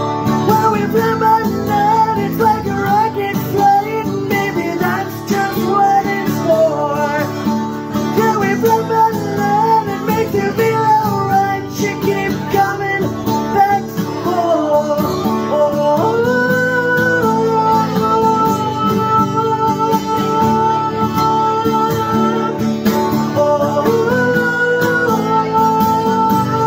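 Live acoustic guitar playing an instrumental passage: a moving melodic line for the first half, then from about two-thirds of the way through, steady held notes ringing over the strummed chords.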